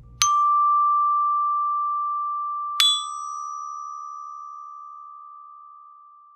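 Percussion bell set (glockenspiel) struck with a mallet: the D bar rings for about two and a half seconds, then the E-flat bar, a half step higher, is struck once and left ringing, fading slowly.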